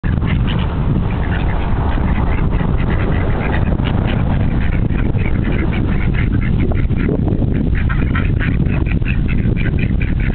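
A flock of ducks quacking continually, many short calls overlapping one another, over a steady low rumble.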